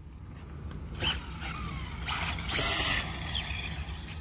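Electric 1/10-scale Hobao EPX RC car running across asphalt some way off, on a temporary cheap motor and ESC with a 3S battery: its motor whine falls in pitch as the throttle comes off, then a louder rush of motor and tyre noise from about two seconds in, over a steady low rumble.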